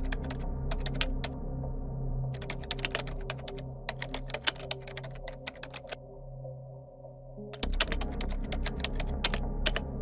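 Computer-keyboard typing clicks in quick runs with short pauses, and a longer pause of about a second and a half two-thirds of the way through before a last run. A low, droning ambient music bed plays underneath.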